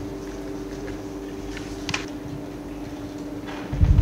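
A steady low hum of two pitches in the hall's sound, with a faint click about two seconds in and a heavy low thump near the end.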